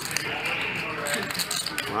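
Poker chips clicking faintly as a player handles his chip stack, over a low murmur of voices.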